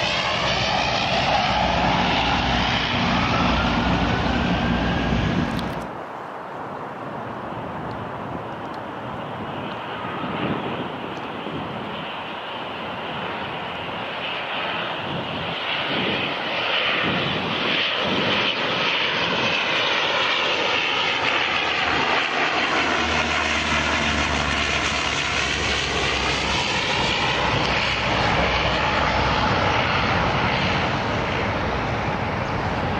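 Twin turboprop engines of a de Havilland Dash 8-300 on final approach, loud and sweeping in tone as the aircraft passes close. About six seconds in it cuts to a second Dash 8-300, heard first more faintly, its engine sound building steadily as it approaches and sweeping again near the end.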